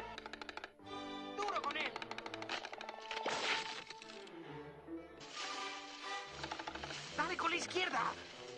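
Cartoon woodpecker hammering its beak rapidly into a tree trunk, fast runs of sharp pecks like a drumroll, over orchestral score. A caterpillar gives squeaky, gliding cries between the runs.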